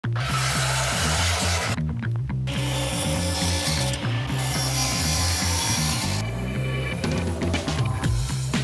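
Power saws cutting wood in short edited clips, a handheld circular saw and then a radial arm saw, over background music with a steady bass line. The saw noise drops out briefly about two seconds in and again after about six seconds.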